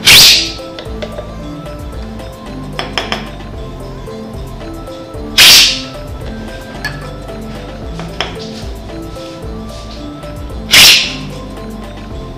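Coffee cupping: a taster slurping coffee hard from a cupping spoon, three loud hissing slurps about five seconds apart, with a few light clicks between them.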